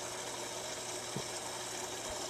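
Aquarium filter running: a steady hiss of moving water with a faint low hum, and a small click about a second in.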